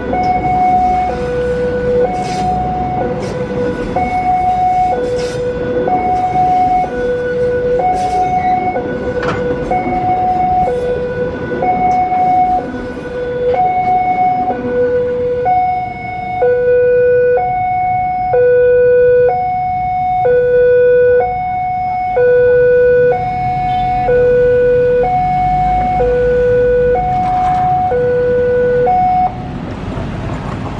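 Railway level-crossing warning alarm sounding a two-tone signal, high and low notes alternating about once a second. In the first half a passenger train's coaches roll over the crossing with wheel clacks and rumble. The alarm cuts off near the end as the crossing clears.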